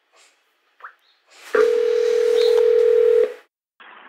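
Telephone ringback tone on an outgoing call: one steady ring of about two seconds while the call waits to be answered, after a faint click.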